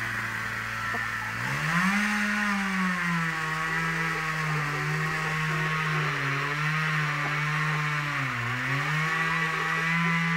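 A nearby engine running. Its pitch climbs sharply as it speeds up about a second and a half in, then holds steady, with a short dip and recovery near the end.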